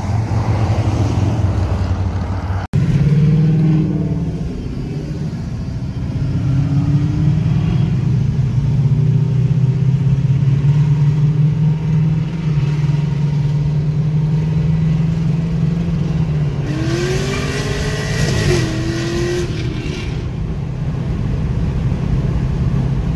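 Cars' engines heard from inside a moving car's cabin: a steady low drone with engine notes rising and falling as the cars ahead rev up and ease off. One clear rising rev comes near the end. The sound breaks off briefly about three seconds in, where one clip gives way to another.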